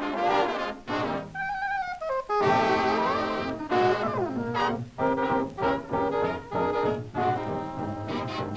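A 1920s–30s jazz band record playing an instrumental passage led by brass. A held note about a second in gives way to the full ensemble, with trombone slides up and down in pitch a few seconds in.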